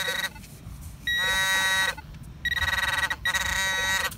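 Electronic target tones from a metal detector and handheld pinpointer working a dug hole in beach sand: four bursts of beeping, each half a second to a second long. They signal a buried coin, a quarter.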